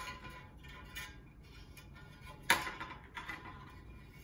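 Bonsai wire scraping and clicking against an unglazed ceramic pot as it is threaded through the tie-down holes, with one sharp click about two and a half seconds in.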